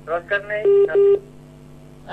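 Two short telephone-line beeps in quick succession, a steady flat tone, heard over the broadcast's phone-in line. A brief bit of speech comes just before them.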